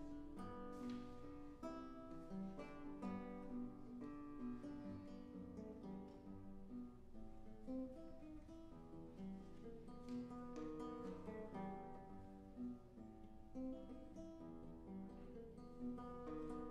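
Solo classical guitar played live: a continuous stream of plucked notes and chords.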